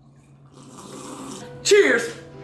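People drinking from mugs: a soft, breathy sipping sound that builds over the first second or so, then a short voice sound falling steeply in pitch near the end.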